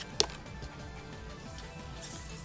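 Quiet background music, with a single sharp click just after the start as a freshly opened pack of Pokémon trading cards is handled.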